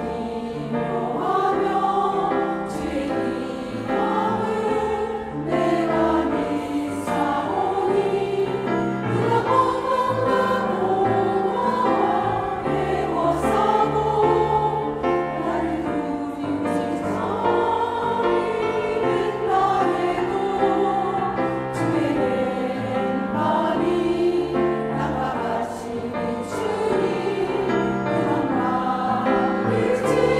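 Women's church choir singing a slow Korean hymn in parts, with piano accompaniment.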